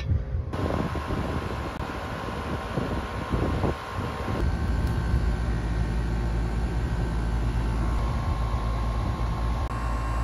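Air-conditioning condensing unit running, a steady fan-and-compressor hum. It comes on about half a second in, and a deeper hum joins about four seconds in.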